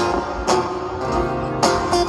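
Acoustic guitar played with no singing: strummed chords ring out, with a strong strum about half a second in and another near the end.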